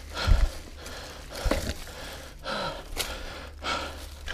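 A mountain biker's heavy, laboured breathing, loud panting breaths about once a second, over a steady low rumble.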